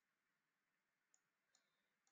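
Near silence, with one or two very faint clicks.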